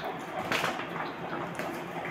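A plastic bag of chocolates crinkling and rustling in irregular bursts as it is picked up and handled.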